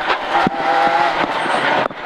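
Citroën Saxo A6 rally car's four-cylinder engine running hard at high revs, heard from inside the cabin, with a short break in the sound near the end.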